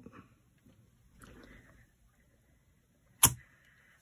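Faint scuffing as a clear stamp on an acrylic block is pressed onto card, then a single sharp tap about three seconds in, typical of the acrylic block knocking on the worktop as it is lifted off and set down.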